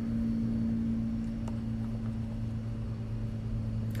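Steady low mechanical hum from a running motor or machine, even in pitch throughout, with a couple of faint clicks about a second and a half in.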